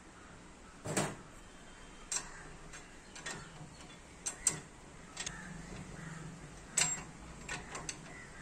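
A steel spanner and steel parts clinking and knocking against a steel machine frame during assembly: about eight scattered, sharp metal knocks, the loudest about a second in and near seven seconds.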